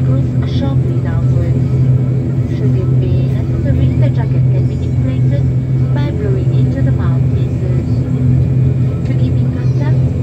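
ATR-72's Pratt & Whitney PW127 turboprop engine running at low power while the plane moves on the ground, a steady low drone with a propeller hum, heard from inside the cabin. People's voices are heard over it.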